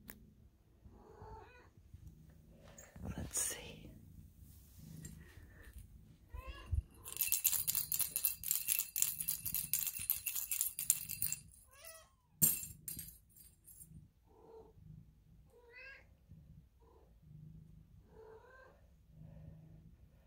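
Short, quiet cat meows repeated on and off, typical of a mother cat calling her kittens to nurse. In the middle comes about four seconds of loud rustling.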